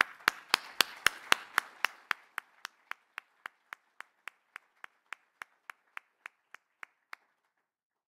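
One person clapping close to a microphone in a steady rhythm of about four claps a second. The claps are loudest in the first two seconds, then fade away and stop about seven seconds in.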